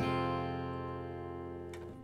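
Acoustic guitar with a capo on the first fret, an E minor chord left ringing after the last strum and slowly dying away, then stopped just before the end.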